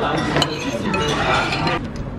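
A metal spoon clinking a few times against dishes at a restaurant table, over a murmur of other diners' voices. The table sounds stop shortly before the end.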